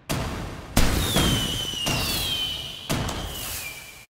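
A ragged string of sharp bangs a fraction of a second to a second apart, each dying away quickly, from black-powder muskets fired one after another. A thin high whistle slides slowly down in pitch behind them, and everything cuts off abruptly at the end.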